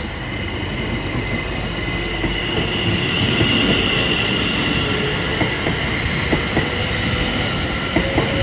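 Greater Anglia Class 720 electric multiple unit pulling away and passing close across a level crossing: a steady rumble of wheels on rail with a faint clatter, a steady high whine above it, growing slowly louder as the train gathers speed.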